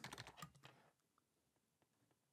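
Faint computer keyboard keystrokes in the first second, then near silence with one or two faint ticks.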